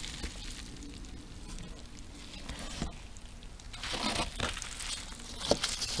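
A gloved hand rustling and digging through damp shredded-paper bedding and compost in a worm bin, with scattered crackles. A louder stretch of rustling comes about four seconds in, and a sharp click follows shortly before the end.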